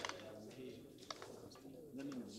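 A pause in a man's speech: faint room tone with a faint low murmur of voice and a couple of light clicks.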